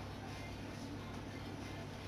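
Quiet room tone: a steady low hum with faint hiss and no distinct event.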